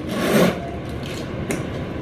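A purse and its metal chain strap being handled: a rasping rub in the first half-second, then quieter scraping with one short click about one and a half seconds in.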